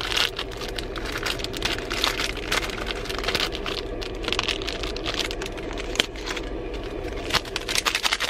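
A thin plastic snack packet crinkling as dried fruit is shaken out of it into a paper cup: a quick, irregular run of crackles and small ticks, over the steady low hum of a car cabin.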